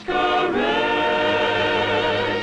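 Choral singing in a film score: a short sung note, then one long held chord from about half a second in.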